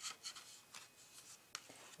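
Faint rustling and light scraping of hands handling paper and craft supplies, with one sharp tick about one and a half seconds in.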